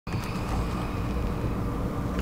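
Steady low rumble with a faint hum, heard inside a parked car: vehicle cabin background noise.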